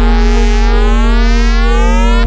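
Synthesized electronic music from a 64k demo's real-time soundtrack: a sustained chord over a deep bass drone, with a cluster of tones rising steadily in pitch under a wavering, phased hiss.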